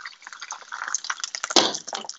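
Battered cod fillets deep-frying in a saucepan of hot oil: an irregular crackle and spatter, with a louder burst about one and a half seconds in. The cook puts the splatter down to a little water that got into the oil.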